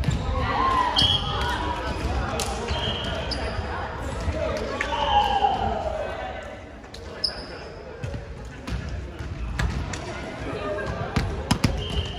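Indoor volleyball play in a large gym: indistinct players' voices, short high sneaker squeaks on the hardwood court, and scattered thuds of the ball bouncing and being struck. The voices fade into a quieter stretch just past the middle.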